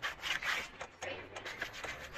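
Bare fingers rubbing shoe polish, thinned with a little water, over a brown leather boot in quick repeated strokes. The polish is being worked thin into the leather to build a high-gloss shine.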